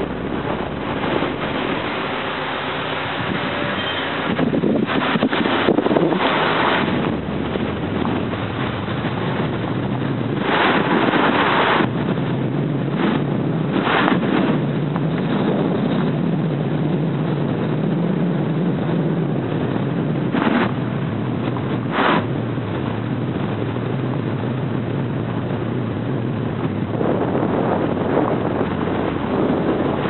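A car driving slowly, its engine and road noise steady inside the car, with wind buffeting the microphone in several short louder bursts.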